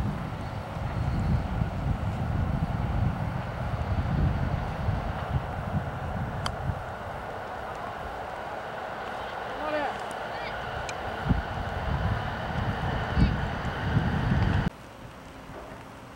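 Wind buffeting the microphone, with a single crisp click about six and a half seconds in: a 9-iron chip shot striking the golf ball. The wind noise stops abruptly near the end.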